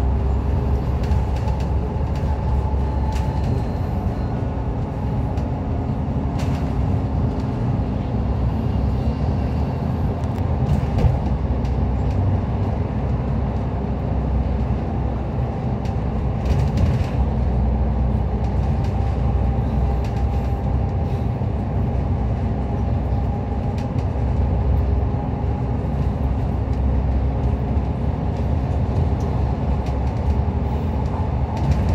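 Double-decker bus cruising at steady speed on an expressway, heard inside the cabin: a continuous low engine drone and tyre rumble, with a few brief rattles.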